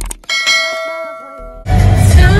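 Notification-bell ding from a subscribe-button animation: a bright chime rings out about a third of a second in, just after a few quick clicks, and fades over about a second. Loud music with singing cuts in near the end.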